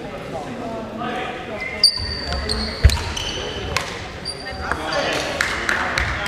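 Badminton rackets striking a shuttlecock in a doubles rally: sharp hits about a second apart, with sneakers squeaking briefly on the wooden court floor between them. Voices echo around the hall.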